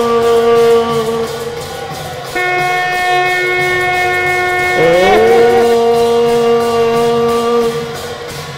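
Conch shells (shankha) blown in long, loud held notes that overlap. One note dies away about a second in, another starts a second later, and a third slides up in pitch near the middle and holds until near the end.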